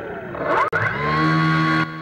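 A motor on an outdoor airship, heard through the onboard camera's microphone. About half a second in its whine rises in pitch, there is a click, and then it holds a steady hum until near the end, when it drops away. It is one of the airship's three thrust motors, which give vertical thrust, forward thrust and sideways yaw force.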